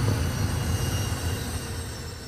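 A low rumbling drone from the film's soundtrack, steady and slowly fading away, after the music has stopped.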